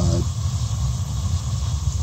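Gas-fired steam boiler's atmospheric burners firing: a steady low rumble with an even hiss of gas.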